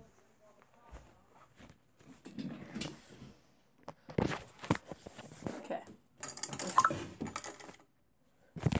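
Rustling and shuffling from handling the phone and moving about, with scattered small metallic clinks like keys or coins, busiest from about six seconds in.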